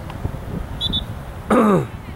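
A person's short, loud vocal sound close to the microphone, falling steeply in pitch, about one and a half seconds in.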